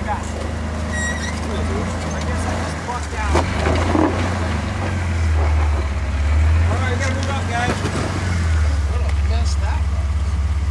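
Rock-crawling Jeep Wrangler's engine running at low revs as it creeps over boulders, a steady low rumble that grows a little louder in the second half as it comes close.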